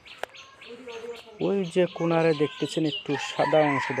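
A rooster crowing, with small birds chirping at a steady rate; a sharp click sounds just after the start.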